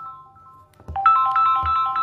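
Mobile phone ringtone: a short electronic melody of a few bright notes. One ring fades out early on and the next starts about a second in.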